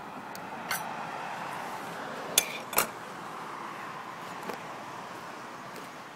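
A few metallic clinks, the two loudest close together about two and a half seconds in, as a barbecue tray is set on a Big Green Egg's stainless steel cooking grid and the lid is closed, over a steady hiss.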